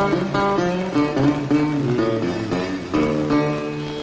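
Solo acoustic guitar playing a blues instrumental passage: a run of single plucked notes over a steady low bass note.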